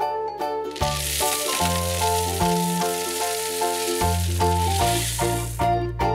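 Skittles candies poured from a bowl into a glass jar: a steady hiss of many small hard candies falling and clattering, starting about a second in and stopping near the end. Bouncy children's music plays underneath.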